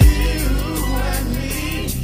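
Music: a song with sung vocals over a deep bass line, with a heavy bass hit right at the start.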